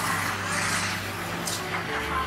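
Street traffic noise, with a vehicle passing, over a low steady hum.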